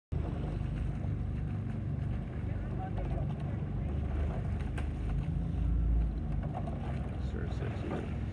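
Steady low rumble of a coaching launch's outboard motor running as it keeps pace with a rowing eight, with wind buffeting the microphone.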